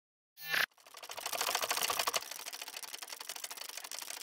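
Intro logo sound effect: a short burst about half a second in, then a fast run of clicks like typing or a camera shutter, loudest for the first second or so and continuing more quietly.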